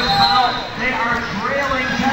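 Voices talking, with no clear words, over rink noise. A brief, steady, high whistle tone sounds right at the start.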